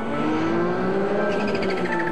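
Porsche 911 GT1 race car's twin-turbo flat-six engine running on track, its pitch rising and then easing back as the car comes through a corner, with background music underneath.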